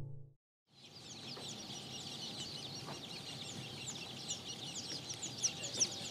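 A crowd of baby chicks peeping: many short, high, downward-sliding chirps overlapping without pause, starting about a second in and growing louder toward the end.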